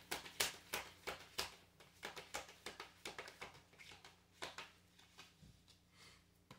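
Tarot cards being shuffled by hand: a run of soft, quick card slaps and flicks, about three a second at first and thinning out toward the end, over a faint steady hum.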